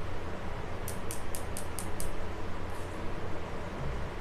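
Steady low background rumble, with a quick run of six short, high-pitched chirps about a second in, roughly five a second.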